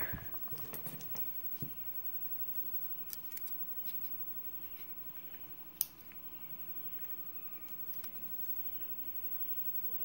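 Faint, sparse metal clicks and scrapes of a steel pick working inside the pin chambers of a brass lock cylinder housing to take out the pins, with one sharper click about six seconds in.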